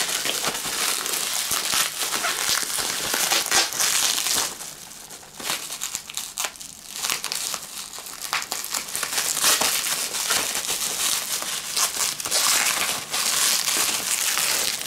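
Plastic bubble wrap crinkling and rustling as it is handled and pulled off a box by hand, easing briefly about halfway through.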